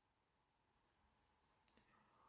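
Near silence, with a single faint click near the end.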